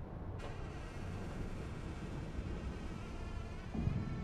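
Dark ambient drone: a low rumble with a hissing, buzzing upper layer that comes in suddenly about half a second in, and a brief low swell near the end.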